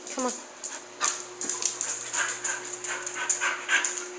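A Labrador–Rhodesian ridgeback mix dog panting quickly, short breaths about five a second, starting about a second in.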